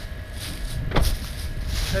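Low steady rumble of the stopped pickup truck's engine idling, with a single sharp thump about a second in.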